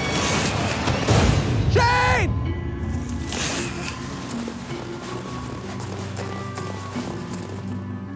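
A man falling through a tree: branches crashing and a heavy thud about a second in, then a short yell. After that, sustained background music with long held notes.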